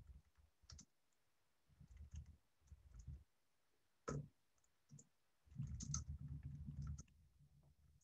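Faint scattered clicks with a few low, muffled bumps and rumbles between them, near silence on an open video-call microphone.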